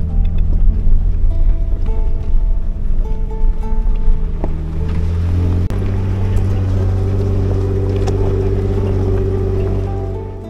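Background music with a plucked-string melody laid over the steady low drone of a Jeep's engine and drivetrain on the trail.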